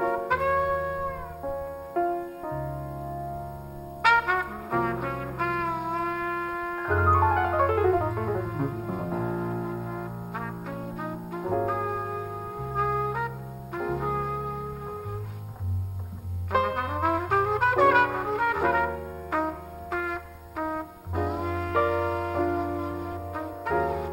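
Jazz trumpet playing a slow ballad melody, mostly long held notes with vibrato broken by a couple of quick runs, over piano and acoustic bass accompaniment.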